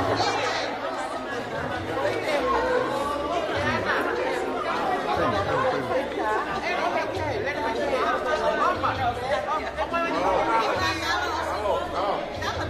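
Crowd chatter: many people talking at once in a large hall, a steady hubbub of overlapping voices with no single voice standing out.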